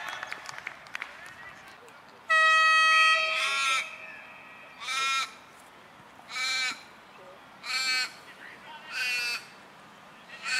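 A loud, steady single-pitched horn-like tone lasting about a second and a half, then an Australian raven calling five times, one short drawn-out caw about every second and a half.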